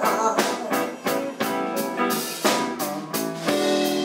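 Live blues band playing, with electric guitar to the fore over a steady drum beat of about two strokes a second.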